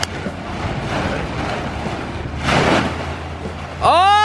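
A large plastic tarp rustling and whooshing as it is lifted and flung up into the air, with a louder swell of rustling about two and a half seconds in. Right at the end a loud, held, pitched call cuts in.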